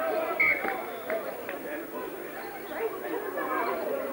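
Chatter of several spectators talking at once, their voices overlapping, with one short high-pitched call or shout about half a second in.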